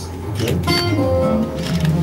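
Resonator guitar strings picked about half a second in and left ringing as a few sustained notes, over a low steady bass tone.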